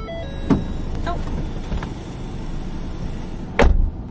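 A car door being worked as someone gets out of the car: a couple of light knocks in the first second, then the door shutting with a heavy thump near the end, over a steady background hiss.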